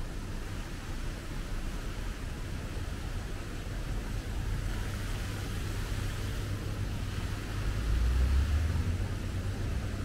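Outdoor city ambience: a steady low rumble with a light hiss over it, swelling louder for about a second around eight seconds in.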